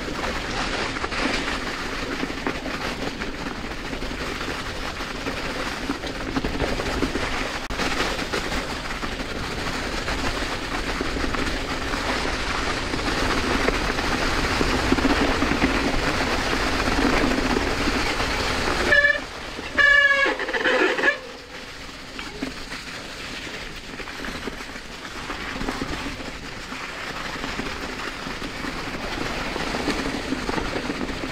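Mountain bike rolling fast over a leaf-covered dirt track, with tyre rumble and wind on the microphone. About nineteen seconds in, a brief high-pitched squeal lasts about two seconds, and the riding noise is quieter after it.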